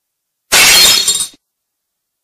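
Cartoon sound effect of a glass shattering: one loud, bright crash of breaking glass about half a second in, ending abruptly under a second later.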